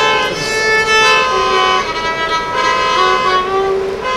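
Solo violin, bowed, playing a slow melody of sustained notes, with longer held notes in the second half.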